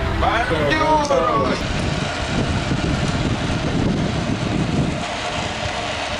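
A man's voice for about the first second and a half. Then a steady rush of wind and street noise on an action camera's microphone as a BMX bike rolls along a city street.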